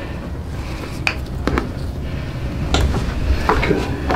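Several short, sharp cracks from spinal joints as a head traction strap is pulled during a chiropractic adjustment: one about a second in, another half a second later, and a few more near the end. Under them runs a low rumble of movement.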